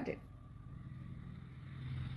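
A faint, steady low hum that grows slightly louder toward the end, under a pause in the speech.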